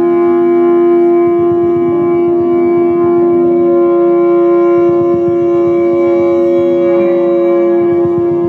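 Live folk music: a sustained drone note held throughout, with slow, long-held notes changing above it, in the sound of a reed or wind instrument.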